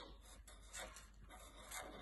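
Near silence with faint strokes of a felt-tip marker on paper, as the number 50 is written.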